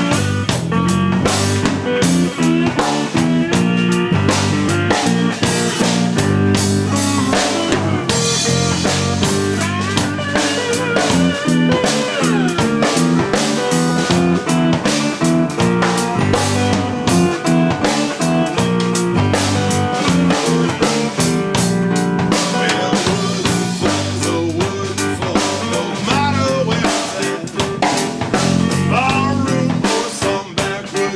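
Blues band playing an instrumental passage: slide electric guitar with gliding notes over electric bass and a steady drum-kit beat.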